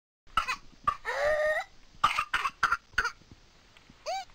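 A person in a whooping cough (pertussis) fit: two coughs, then a long, crowing intake of breath that rises in pitch, then a quick run of four coughs. This cough-and-whoop pattern is the classic sign of whooping cough.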